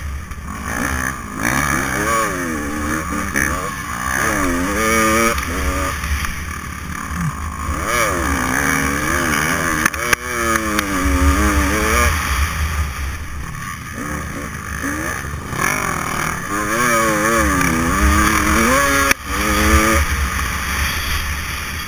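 Motocross dirt bike engine revving up and dropping back again and again as it is ridden hard around the track, its pitch climbing and falling every few seconds. Heavy wind rumble on the on-board microphone comes and goes under the engine.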